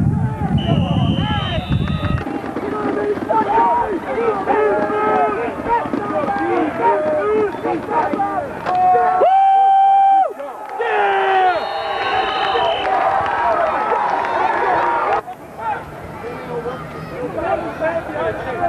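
Football spectators in the stands talking and calling out over one another, with a couple of short high whistle tones about a second in and again around twelve seconds. A loud steady held note lasting about a second sounds a little past the middle.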